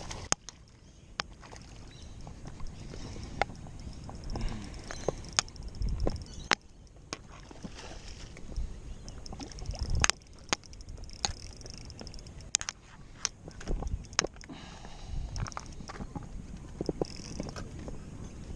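Scattered sharp clicks and knocks from a spinning rod and reel being handled while a small surface lure is worked across the water, with light splashes. The clicks are irregular, several a few seconds apart, the loudest about six and ten seconds in.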